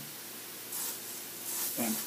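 Two short hissing sprays, less than a second apart.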